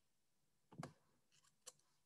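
Near silence, with one short faint click just under a second in and a tinier tick shortly before the end.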